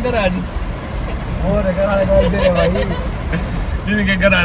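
Steady low road and engine rumble of a car, heard inside the cabin while it drives, under a man's voice laughing and vocalising without words near the start and again midway.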